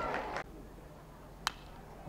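Faint outdoor ballpark background with one sharp click about one and a half seconds in.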